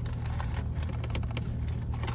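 Steady low hum inside a car cabin, with scattered light clicks and taps from plastic food containers and utensils being handled.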